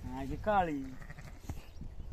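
A sheep bleating once, a wavering call lasting about a second at the start, followed by faint background.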